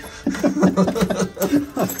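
Men laughing at a joke.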